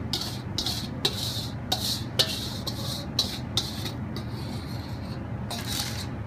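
Spatula scraping the last of the melted chocolate out of a pot in quick repeated rasping strokes, about two to three a second, stopping about four seconds in with one more stroke near the end. A steady low hum runs underneath.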